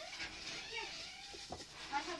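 Faint bleating of farm animals, with a single soft knock of a long wooden rolling pin on a wooden dough board about one and a half seconds in.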